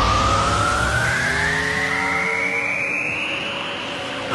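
Anime energy-attack sound effect: a whine rising steadily in pitch over a few held lower tones, slowly growing quieter.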